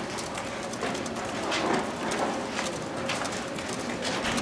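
Room noise with scattered, irregular clicks and taps.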